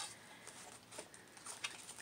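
Faint paper rustling with a few soft ticks as an envelope of mail is opened by hand.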